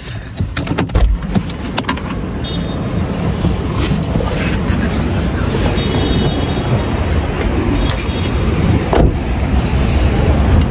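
Handling noise and knocks as a person climbs out of a car holding a phone, over a steady rushing outdoor noise that grows in the first few seconds, with a car door thumping shut near the end.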